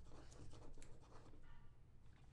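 Near silence: a low steady room hum with faint rustling and light ticks of trading cards being handled.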